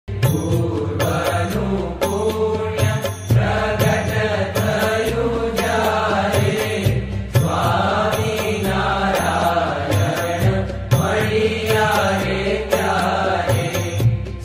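Hindu devotional chant sung over instrumental music with a steady bass and a regular beat.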